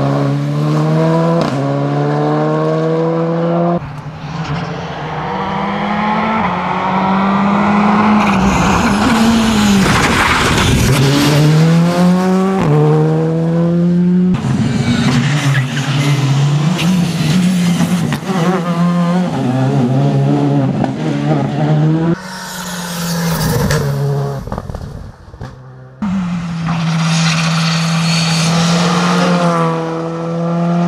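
Škoda Fabia R5 rally car's turbocharged 1.6-litre four-cylinder engine driven hard past on a tarmac stage, the pitch climbing in steps through the gears and dropping on lifts and shifts. Several separate passes follow one another with abrupt breaks.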